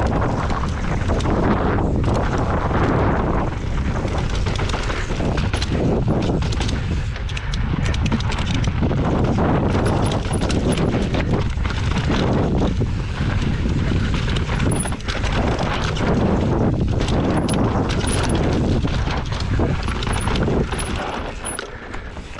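Enduro mountain bike rattling and clattering down a rocky dirt trail: knobby tyres crunching over loose stones and roots, with a rapid run of sharp knocks from the bike over the bumps, under a steady rush of wind and tyre noise.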